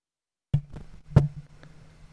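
Microphone signal dead silent, then cutting back in with a pop about half a second in as the mic is replugged, followed by a loud knock of the mic being handled about a second in. A steady low electrical buzz runs under it once the signal returns.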